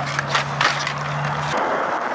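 Skateboard wheels rolling on concrete with a steady low hum and a few sharp clacks from the board; about one and a half seconds in the hum stops and a rougher rolling noise takes over.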